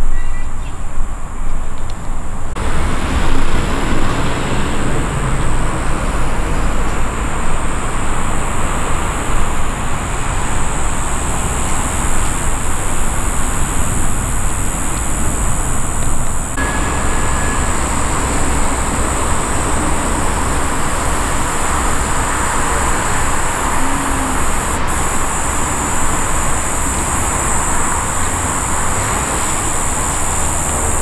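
Steady outdoor background noise, a continuous hiss over a low rumble, that shifts abruptly twice, about two and a half seconds in and again about sixteen seconds in.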